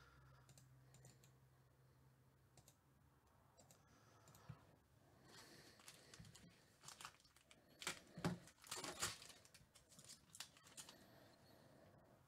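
Faint crinkling, rustling and clicking of a foil trading-card pack being opened and its cards handled. The sounds are sparse at first and come thick and loudest in the second half.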